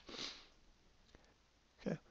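A short breath sniffed in through the nose, then near silence with one faint click, before a spoken word at the end.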